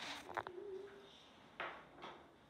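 Flute playing one soft, short low note, about half a second long, with breathy air noise before it and another puff of breath near the end.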